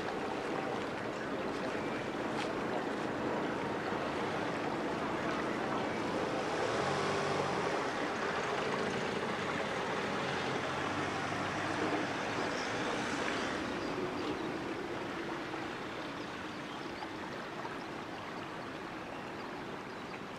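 Steady rushing outdoor ambience, like wind with a vehicle going by, a little fuller in the middle and easing off toward the end.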